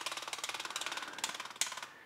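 Cameradactyl Mongoose scanning holder's motor advancing a 35mm film strip through the gate: a fast, even mechanical ticking, with a sharper click about one and a half seconds in, after which the advance stops shortly before the end.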